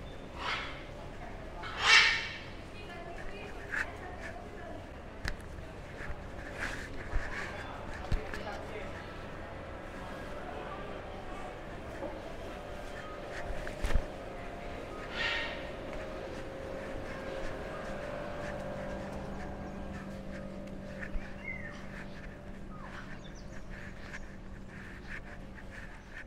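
Background murmur of voices with occasional loud, short bird squawks from the enclosures, the loudest about two seconds in and another about fifteen seconds in. A steady low hum joins about eighteen seconds in.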